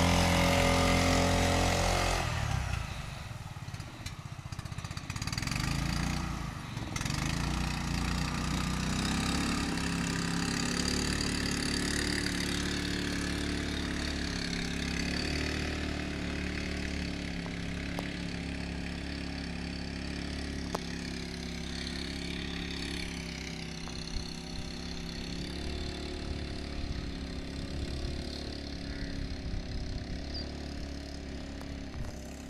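Motorboat engine running: loud and close for the first two seconds, then a steady drone that slowly fades as the boat moves away across the water.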